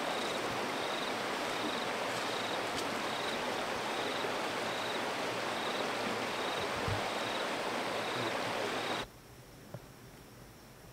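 Steady rushing outdoor noise with a short high chirp repeating about every three-quarters of a second. The noise cuts off abruptly about a second before the end.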